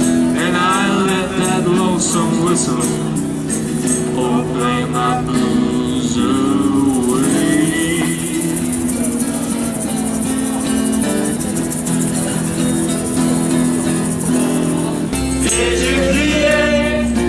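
Live street music: an acoustic guitar strummed steadily while a man sings into a microphone, over a crisp, regular percussive beat.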